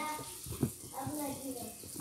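Quieter speech between louder child's talking, with a short knock about half a second in.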